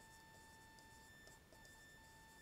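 Near silence: room tone with a faint, steady, high electronic whine.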